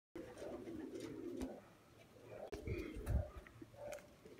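Domestic pigeons cooing, with a few low rumbling thumps a little past halfway.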